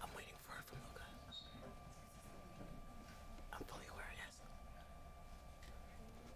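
Faint, indistinct voices of people talking at a distance, with a steady faint high hum under the room tone.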